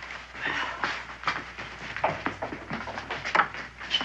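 Clothing rustling and shuffling movement as a dress is hastily pulled on, then a sharp click about three seconds in as a wooden plank door's latch is lifted and the door opened.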